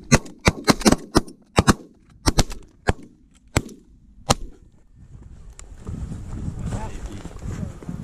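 A volley of shotgun fire from several hunters shooting at geese: about a dozen shots in quick, uneven succession over the first four seconds or so. The firing then stops, leaving a lower stretch of rustling noise and a few short calls.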